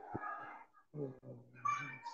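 A faint, muffled voice murmuring in three short broken stretches, the last one slightly louder.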